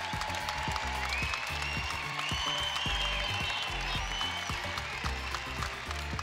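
Basketball arena crowd applauding a player's curtain call, over music with a steady beat.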